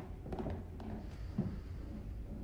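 Quiet room tone: a low steady hum, with a few faint soft knocks in the first second or so.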